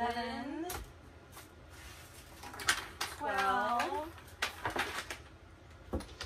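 A woman's short wordless voice sounds, twice: near the start and again about three seconds in. Between them come sharp clicks and rustles of purses being handled in a cardboard box.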